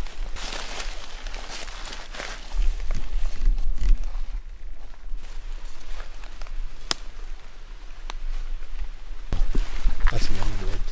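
Footsteps through dry fallen leaves with clothing rustling and scattered sharp clicks and crackles, and a low rumble from the camera being handled that swells about two and a half seconds in and again near the end.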